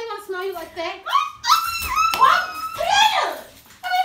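A person's voice, high-pitched and sliding up and down in pitch in a string of syllables, not made out as words.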